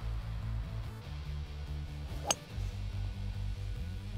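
A hybrid golf club striking a ball off the tee: one sharp click about two seconds in. Background music with steady bass notes runs under it.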